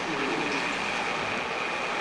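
Steady, even hiss of room and recording noise in a pause between speech.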